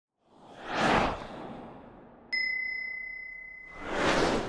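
Logo intro sound effects: a whoosh that swells and fades in the first second, then about two seconds in a single bright ding that rings on and slowly dies away, then a second whoosh building near the end.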